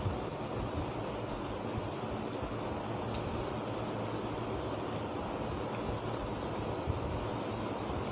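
Steady background noise, an even low rumble and hiss with no clear tones, and a few faint clicks.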